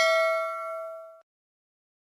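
Notification-bell 'ding' sound effect of a subscribe-button animation, ringing and fading, then cut off suddenly a little over a second in.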